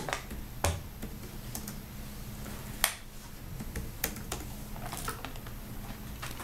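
Irregular clicks and taps of typing on a laptop keyboard, with a few sharper knocks among them.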